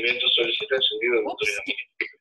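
Indistinct, overlapping voices over a video call, which the recogniser left untranscribed. They include background noise from a participant's unmuted microphone. The sound cuts out briefly near the end.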